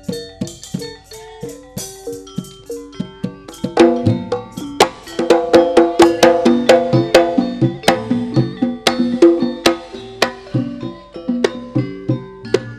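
Traditional percussion music: a steady rhythm of struck pitched instruments that ring briefly after each stroke, with drum beats. It grows louder and busier about four seconds in.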